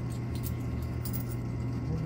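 Coin-pusher arcade machine humming steadily, with a few faint light clicks of quarters.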